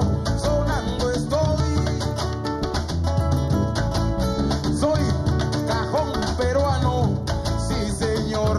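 Afro-Peruvian music played live: cajones and conga drums keep a dense, steady rhythm under an acoustic guitar and a singing voice.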